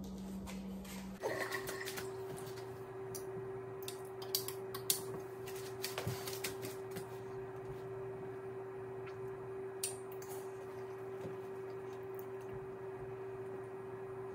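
A steady electrical hum that shifts to a higher pitch about a second in and then holds, with a few faint scattered clicks.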